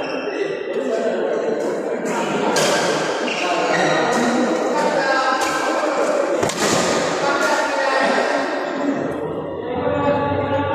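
Badminton rackets striking a shuttlecock in a doubles rally: a string of sharp hits, roughly half a second to a second apart, with one harder smash-like hit about six and a half seconds in. Voices of other players carry on underneath, echoing in a large hall.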